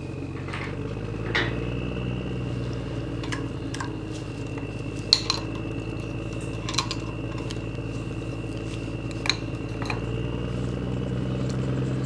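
Scattered light metal clicks and clinks from a screwdriver and small injector parts being handled on a 7.3 Power Stroke cylinder head, the sharpest about five seconds in, over a steady low hum with a faint high whine.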